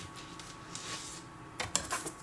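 Faint handling noise from a plastic graded-card slab being picked up. A soft rustle comes first, then a few quick clicks about one and a half seconds in.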